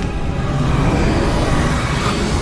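Steady, rumbling roar of flames, a sound effect for a blazing fire.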